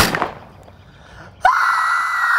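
A single pistol shot, sudden and loud with a short ringing tail. About a second and a half later a boy starts one long, high-pitched scream and holds it.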